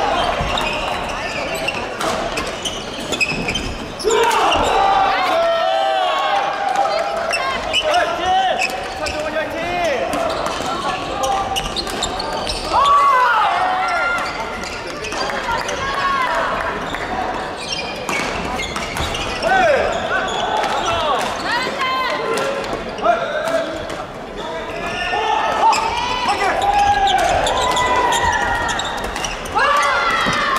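Badminton rallies on several courts in a large hall: rackets hitting shuttlecocks with many sharp clicks, and court shoes squeaking in short rising and falling chirps, over many voices echoing in the hall.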